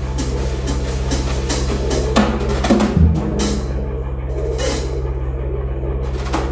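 Drum kit played live in loose, irregular strokes on drums and cymbals, a few hits a second, over a steady low hum. A heavy low drum hit lands about halfway through.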